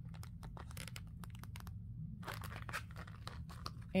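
Handling noise from a wallet being opened and turned over: scattered small clicks and rustles from its flaps and pockets, with a short lull a little before halfway.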